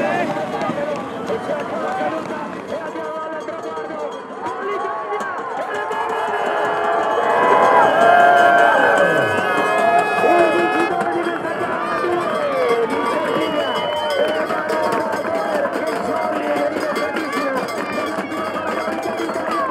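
Excited voices shouting and cheering, loudest about eight seconds in, with music underneath.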